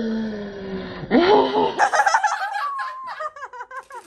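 A young woman's long, drawn-out 'ohhh' of delight, falling slowly in pitch, breaks about a second in into a high rising squeal, then excited laughter.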